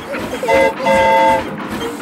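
Steam locomotive whistle of the E.P. Ripley: a short toot, then a longer blast, several notes sounding together.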